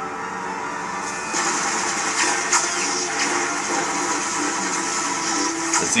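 Action sound effects from a film soundtrack: a steady noisy rush with faint held tones under it, growing louder about a second and a half in, with a few short sharp hits later on.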